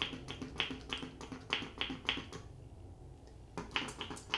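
Fine-mist finger-pump spray bottle squirted rapidly onto wet hair: a quick series of short hissing squirts, a pause of about a second past the halfway point, then a few more squirts near the end.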